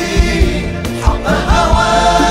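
Live Egyptian inshad (Sufi devotional chant): a male voice sings over an ensemble accompaniment with steady percussion beats. The voice rises into a long held note in the last half-second.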